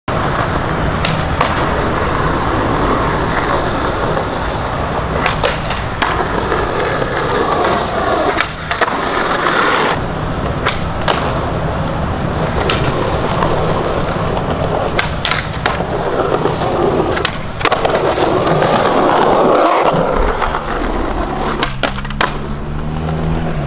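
Skateboard wheels rolling over stone paving, broken by sharp clacks of tail pops, landings and the board striking granite ledges, repeated over several tricks. There are longer stretches of scraping as the board slides along the ledges.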